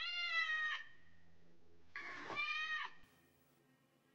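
A cat meowing twice: one call just under a second long at the start, and a second about two seconds in.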